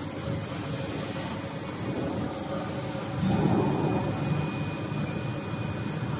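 Tape slitting machine running, a steady mechanical hum and hiss that grows louder for about a second just past the middle.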